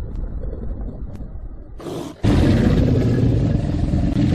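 Animal roar sound effect: a low rumbling growl, then about two seconds in a loud, drawn-out roar sets in suddenly and holds.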